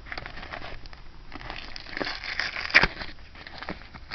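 Crinkling and crackling of a padded paper mailer envelope being handled by hand, with one sharp, louder crack near three seconds in.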